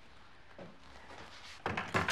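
Door lock and latch being worked: a quick run of sharp clicks and knocks near the end, after a faint step.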